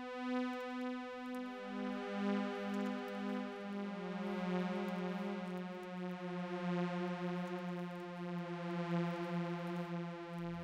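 SuperCollider sawtooth synth notes: each is a pair of sawtooth oscillators detuned 2 Hz apart, so the tone beats slowly, low-pass filtered and shaped by a rise-and-decay amplitude envelope. Several notes are triggered one after another, stepping lower in pitch and overlapping as each sustains.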